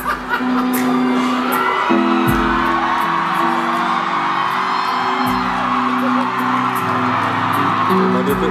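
Live concert music, held chords changing every second or two, with a crowd cheering and whooping over it.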